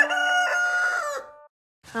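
Rooster crowing, its long final note held steady and cutting off about a second in.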